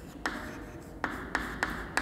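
Chalk writing on a chalkboard: soft scratching strokes broken by several sharp taps as the chalk strikes the board.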